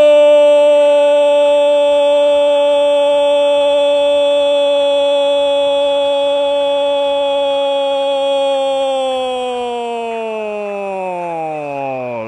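Football radio commentator's long drawn-out "gooool" cry, held on one high note for about twelve seconds and then falling away in pitch near the end. It announces a goal, a penalty kick just put away.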